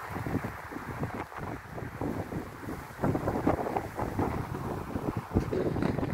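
Wind buffeting the phone's microphone in irregular gusts, louder from about halfway through.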